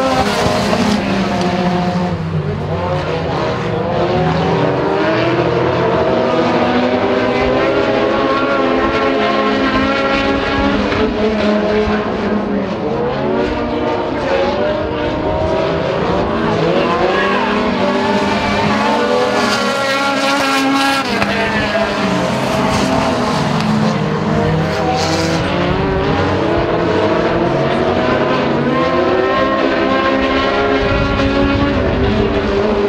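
A pack of compact dirt-track stock cars racing around the oval, several engines overlapping and revving up and down in pitch as they run through the turns and down the straights.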